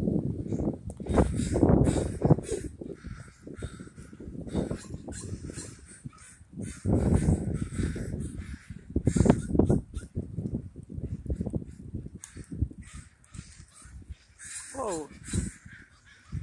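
A large flock of crows cawing over and over, many birds calling at once. A heavy, uneven low rumble of noise on the microphone comes and goes underneath.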